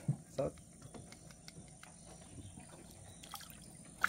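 Quiet river-side ambience: faint trickling and dripping of water with a few light ticks.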